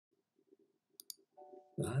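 A computer mouse button clicked, a sharp press and release about a tenth of a second apart, about a second in, as the video player is started. A voice starts speaking near the end.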